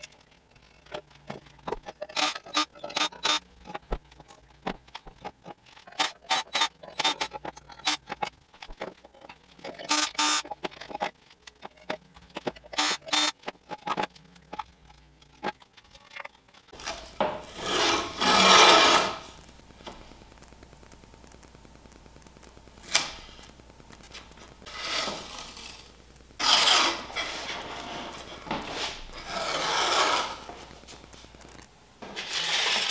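Quick clicks and knocks from wooden shelf boards being taken apart by hand. Then blue painter's tape is pulled off its roll in several long rips, the loudest sounds here, as it is run along a board's edge.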